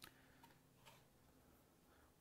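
Near silence: room tone with three faint, short clicks in the first second as the metal-clad mug-press heating element is turned in the hands.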